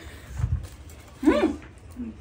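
A dull low thump, then about a second later one short voiced call that rises and falls in pitch.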